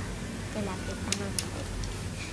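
Quiet room tone with a steady low hum and a few light clicks from small craft items being handled on a table.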